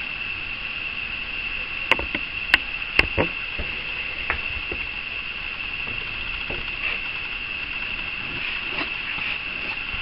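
A steady, high-pitched chorus of night insects, with a few sharp clicks and knocks about two to three seconds in.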